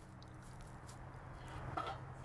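Faint outdoor hum, then near the end a short squeak as the metal lid of a monitoring well's protective casing starts to be lifted.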